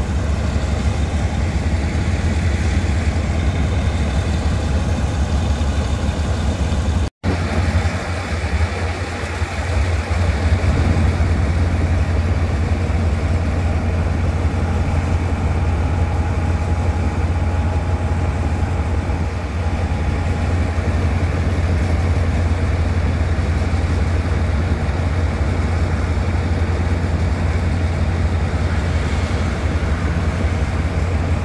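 Diesel-electric locomotive No. 4007, an Alsthom of the State Railway of Thailand, idling with a steady deep drone. The sound cuts out briefly about seven seconds in.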